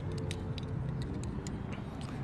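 Steady low hum of road traffic, with a string of light, sharp clicks from two disposable plastic lighters being handled together in the hand.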